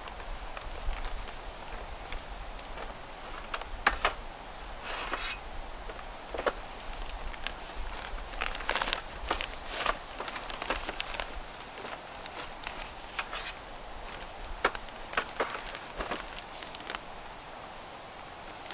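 Fabric carry case rustling and crinkling as the rolled-up aluminum tabletop of a camp table is packed into it, with scattered sharp clicks and light rattles from the aluminum pieces, in uneven short bursts.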